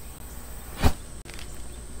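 A tuft of homemade guncotton, lit with a lighter, flashes off in one quick whoosh a little under a second in.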